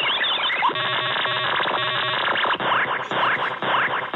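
Harsh, glitchy computer-generated noise from screen-glitch malware on a virtual machine. A dense hiss turns into a stuttering grid of repeating tones about a second in, then into a run of quick falling sweeps, several a second.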